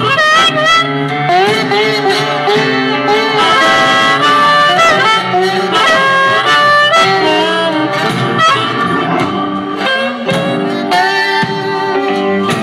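Blues harmonica playing a solo line of held and bent notes over strummed and picked acoustic guitar, performed live through the hall's amplification.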